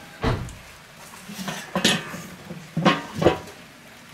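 A series of metal clanks and knocks, some ringing briefly: a cast-iron Dutch oven lid being set down on a kettle grill's grate, then the Weber kettle grill's steel lid being put on over it.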